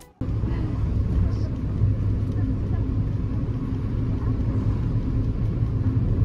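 Steady low rumble of a car driving, heard inside the cabin, starting suddenly a fraction of a second in.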